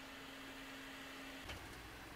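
Faint room tone with a low steady hum, which stops with a soft click about one and a half seconds in.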